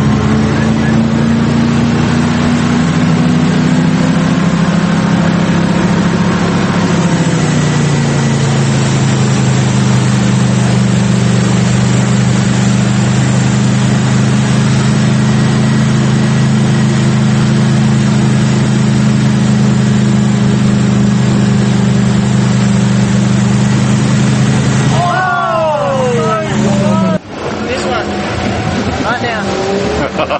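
Jet ski engine running steadily at towing speed with water spray rushing. Its pitch drops slightly several seconds in and then holds. Shouting voices come in near the end, and the engine cuts off suddenly just after.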